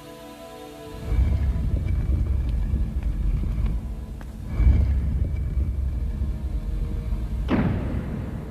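Dramatic film soundtrack: soft music gives way about a second in to a loud, deep rumble that swells again midway, with a quick falling whoosh near the end.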